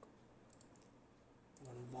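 A few soft computer mouse clicks over faint room hiss, the last a quick double click, with a man's voice starting near the end.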